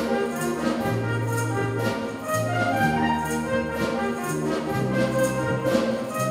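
School wind band playing an arrangement of English folk tunes: brass and woodwinds in held, changing chords, with regular drum and cymbal strokes.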